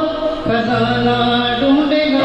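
A man singing a Hindi film song into a microphone over a karaoke backing track, holding one long note through the middle and then stepping up in pitch near the end.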